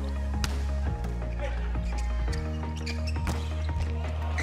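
Background music with a steady deep bass line, laid over the match sound. A few sharp hits of a volleyball being served and played stand out.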